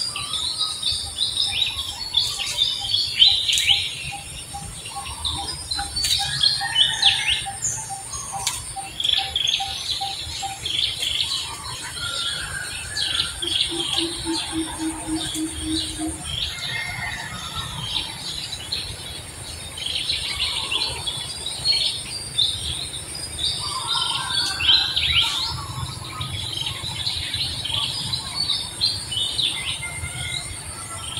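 Forest birds chirping and calling, with a steady high insect hum. For the first ten seconds or so one note repeats evenly about three times a second, and near the middle a lower, quicker run of notes lasts a couple of seconds.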